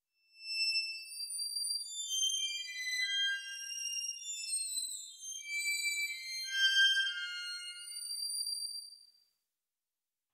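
Surge XT software-synth cello patch transposed far up, with its body-resonance EQ pushed to 10 kHz, playing a string of very high, thin notes as a 'world's smallest violin'. Several notes overlap at times, and the playing stops about nine seconds in.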